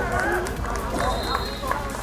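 Players and spectators shouting across an outdoor football pitch, with a brief, thin, high whistle blast from the referee about a second in.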